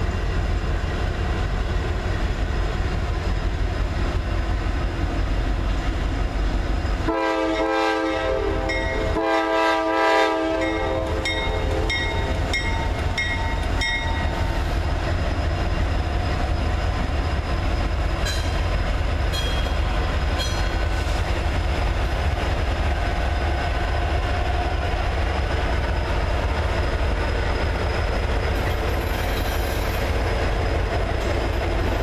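Norfolk Southern diesel locomotives, a GE D9-44CW leading an EMD SD70M-2, hauling loaded coal cars past with a steady low rumble. The lead locomotive's air horn sounds about seven seconds in for several seconds, strongest in its first three seconds. Brief high squeals come around eighteen to twenty seconds in.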